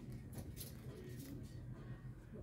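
Quiet store ambience: a low steady hum with a few faint soft noises.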